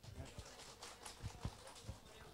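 Faint, irregular knocks and clicks from a handheld microphone being handled as it is passed from one person to another.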